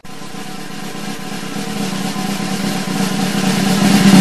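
Music riser: a snare drum roll over a held low note, starting suddenly and building steadily louder.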